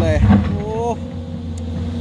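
SANY SY205C hydraulic excavator's diesel engine running steadily while it digs into a pile of hard weathered rock.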